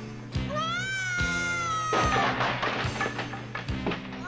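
Action-film soundtrack: dramatic music over a steady low drone, with a long high wail that rises and then slowly falls from about half a second in, and a few sharp hits.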